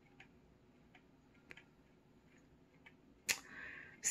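Quiet room with a few faint ticks, then a sharp mouth click about three seconds in and a short intake of breath just before speech resumes.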